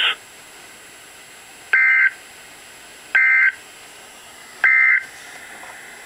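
Three short, equal bursts of warbling two-tone digital data from an Emergency Alert System broadcast on NOAA Weather Radio, about a second and a half apart, with a faint hiss between them. They are the SAME end-of-message code that closes the alert.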